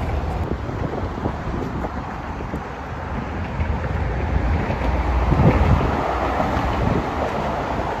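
Wind buffeting the phone's microphone: a steady low rumble that surges in a stronger gust about five and a half seconds in.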